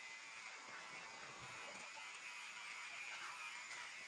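Electric hair clippers running with a faint, steady buzz while trimming a child's short hair.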